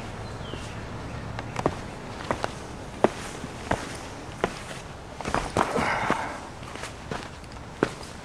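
Hikers' footsteps on a dirt and rock forest trail, a step about every two-thirds of a second, with a longer scuffing rustle a little past halfway.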